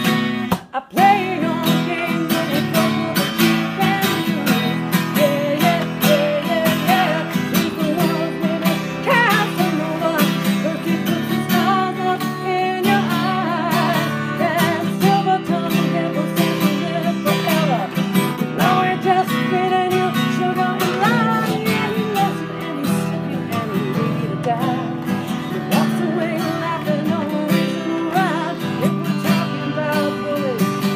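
Acoustic guitar strummed steadily with a woman singing over it, with a brief break in the playing about a second in.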